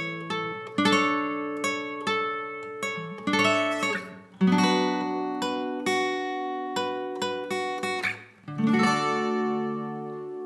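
Instrumental passage of a song without vocals: acoustic guitar strummed in chords that ring and fade, briefly cutting out twice before the next strum, with a last chord left ringing near the end.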